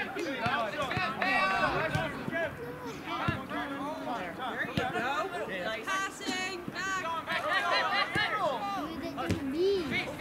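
Overlapping voices of players and spectators calling and chattering at a soccer match, with a few short, sharp knocks in between.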